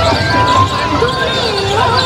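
Busy fairground din: overlapping voices, loudspeaker music and repeated dull low thuds.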